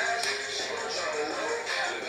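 Hip-hop track with vocals playing through a laptop's speakers, the music of a trap-cardio dance workout video.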